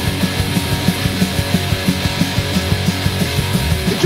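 Instrumental passage of a German punk rock song: electric guitar over a fast, steady drum beat, with no vocals.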